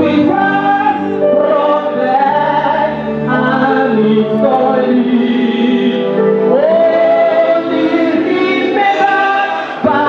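A church congregation singing a gospel song together, many voices holding long notes in a slow line.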